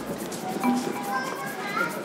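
Indistinct voices, children's among them, over faint background music whose bass beat has dropped out.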